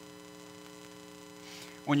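Steady electrical mains hum, several unchanging tones held at an even low level.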